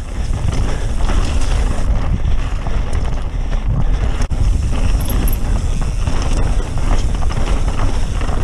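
Mountain bike, a Santa Cruz Megatower, rolling fast down a dirt forest singletrack: a loud, steady rush of wind on the on-board camera's microphone mixed with tyre noise on the dirt, with a few light clicks from the bike.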